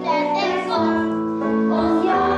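A boy singing a Christmas song solo into a microphone, with instrumental accompaniment under his voice.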